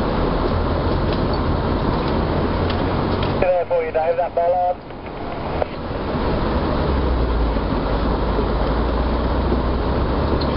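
Steady running noise inside a 4x4 driving slowly along a rough green lane: engine hum and road rumble. A little past a third of the way in the noise drops away for about a second while a short wavering voice-like tone sounds, and from about seven seconds the low engine hum grows stronger.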